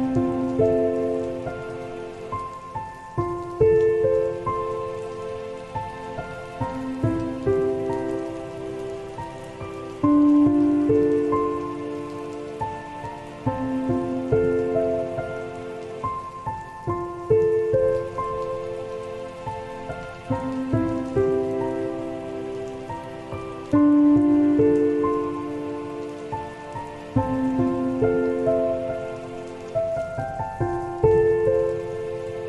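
Slow, soft solo piano music over a steady recording of falling rain. The piano plays long notes and chords that die away slowly, with a louder new phrase coming in about every six or seven seconds.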